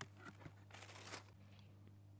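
Faint crinkling of tissue paper and a cardboard shoebox being handled as it is opened and boots are lifted out, strongest in one short rustle about a second in, with a few small clicks over a low steady hum.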